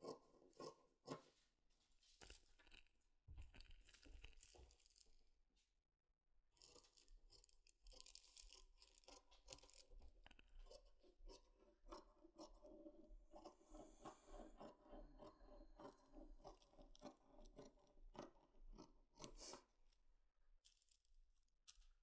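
Faint, irregular snipping of dressmaking scissors cutting through woolen knit fabric along a pattern.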